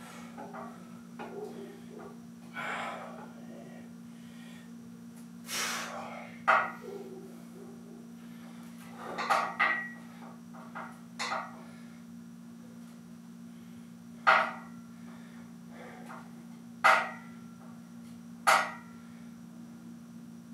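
Short, sharp breaths blown out every few seconds, several in all and the loudest near the end, from a man straining through a held isometric single-leg ankle drill under a loaded bar. A steady low hum runs underneath.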